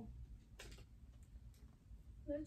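Near silence: room tone with a few faint, short clicks as the biker shorts are handled.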